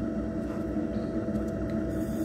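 Pottery Crafts Alsager electric potter's wheel running, its 0.33 hp permanent-magnet motor giving a steady hum as the wheel head spins.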